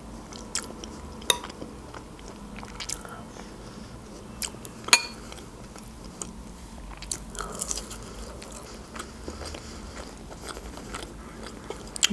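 A person chewing and biting food, with soft mouth sounds and scattered sharp clicks; the loudest click comes about five seconds in.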